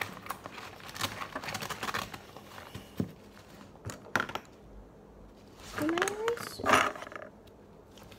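Small clicks, clacks and rustles of pens, pencils and other stationery being handled and put into a fabric pencil case, busiest in the first few seconds. About six seconds in there is a short rising hum from the girl's voice, followed by the loudest moment, a brief scuffing noise.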